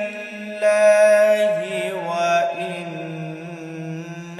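A male qari reciting the Quran in the melodic tajweed style: one long drawn-out held note that winds through ornamented turns about halfway through and settles onto a lower sustained pitch.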